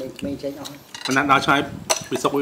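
A metal spoon clinking against ceramic dishes, with one sharp clink near the end.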